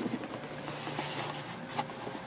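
Faint rustling and a few light taps of trading cards and wrappers being handled on a table, over a low steady room hum.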